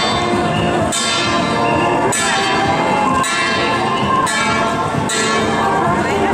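A processional gong struck about once a second, each stroke ringing on into the next.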